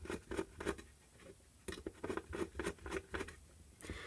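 A screwdriver working the small screws out of the front of an LED floodlight: light clicks and scrapes of metal on metal. They come in a short run in the first second, then after a brief lull carry on from a little under two seconds in until just before the end.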